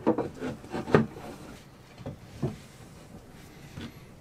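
Cut wooden panel, a drawer front being test-fitted, knocking and rubbing against the wooden cabinet opening: a handful of short knocks, the loudest about a second in, with scraping between.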